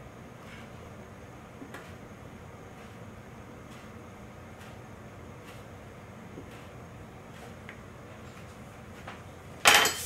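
A round metal pastry cutter pressed into dough on a wooden counter, giving a few faint soft taps. Near the end it lands with one loud metallic clatter as it is set down on the counter.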